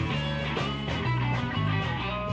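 Live blues-rock band playing an instrumental passage: electric guitar over electric bass and a drum kit, with steady bass notes and a regular drum beat.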